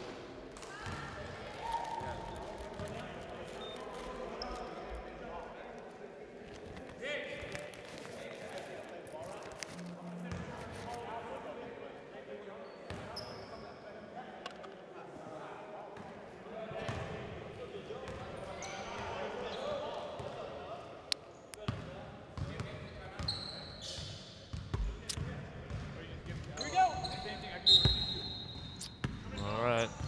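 Basketball bouncing on a hardwood gym floor over a low murmur of distant voices. The bounces get louder and more frequent over the last several seconds.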